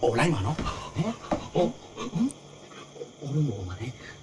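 Two men talking in Burmese in an animated exchange of film dialogue.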